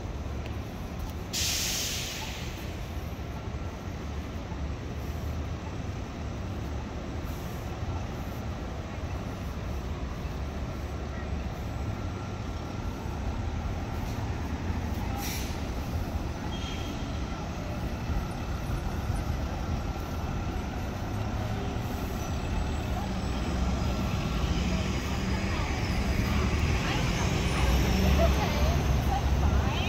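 City street traffic: a steady low rumble of buses and cars, with a short sharp air-brake hiss about a second and a half in and a briefer one near the middle. The traffic grows louder near the end as a city bus draws near.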